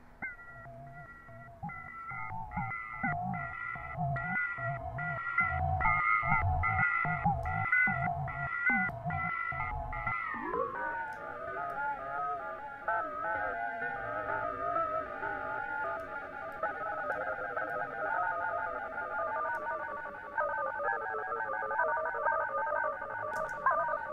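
Electronic music loop played through Ableton Live's Shifter effect with ring modulation and drive: pitched ringing tones over a pulsing beat with bass hits. About ten seconds in, the pitch sweeps and the beat thins out, leaving a wavering, smeared ring-modulated tone.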